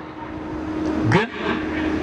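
A man's voice speaking one short word about a second into a pause, over a steady rushing background noise with a faint low hum.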